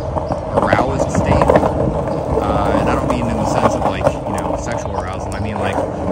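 Skateboard wheels rolling over street pavement: a steady rumble with frequent small clicks over cracks and joints.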